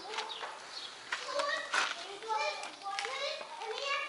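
Children's voices calling and chattering at a distance: short, high-pitched cries that come and go, starting about a second in.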